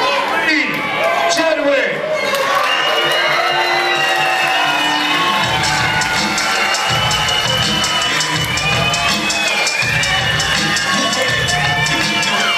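Fighter's walk-out music played loud over a hall PA, a heavy beat coming in about five seconds in, with the crowd cheering and whooping under it.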